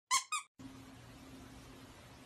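Two short, high-pitched squeaks a fraction of a second apart, as an intro sound effect, followed by faint hiss.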